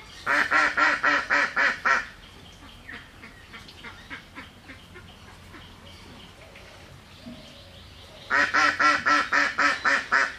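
A duck quacking in quick runs of about four quacks a second: one run in the first two seconds, then quieter faint calls, then another loud run starting near the end.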